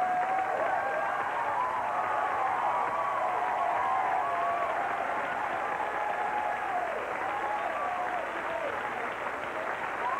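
Comedy club audience applauding steadily, with voices calling out over the clapping.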